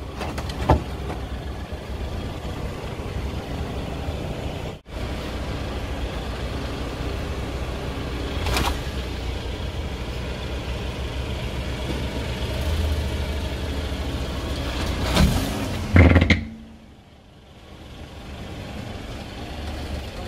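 Idling car engine, a steady low rumble, with a few short sharp cracks over it, the loudest about sixteen seconds in. The rumble drops away briefly just after, then returns.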